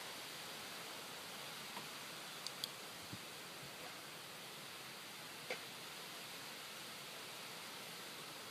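Steady, faint background hiss of outdoor ambience, with a few faint short clicks about two and a half, three and five and a half seconds in.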